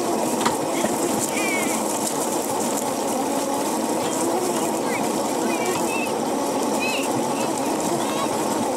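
Razor electric go-kart's motor and chain drive running steadily as it rolls over bumpy grass, a dense whirring hum with a slightly wavering pitch.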